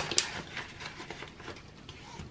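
Clear plastic cash envelope and ring binder being handled: two sharp clicks right at the start, then soft plastic rustling.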